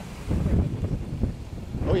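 Gusty wind buffeting the microphone, a low rumble that picks up about a third of a second in: the wind shift ahead of the storm, with the wind now out of the southwest.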